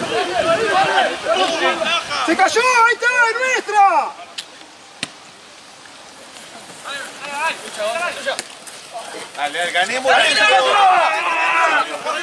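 Several voices shouting on and beside a rugby pitch during open play, loud at first, dropping to a quieter spell in the middle with one sharp knock, then rising again near the end.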